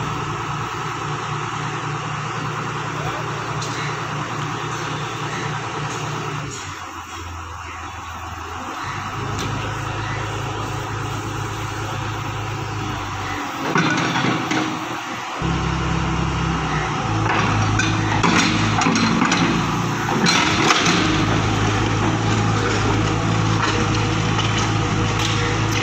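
Tata Hitachi tracked excavator's diesel engine running, its note dropping and rising as the hydraulics work the boom and bucket, with scraping and knocking from the bucket working through rubble in the second half.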